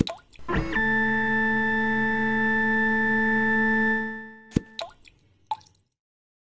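A short synthesized jingle tone: after a click, a single electronic note slides up and is held steadily for about three seconds, then fades away. A few light clicks follow near the end.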